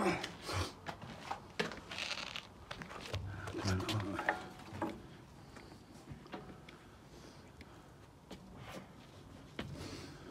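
Indistinct low voices with scattered short clicks and knocks, growing quieter and sparser in the second half.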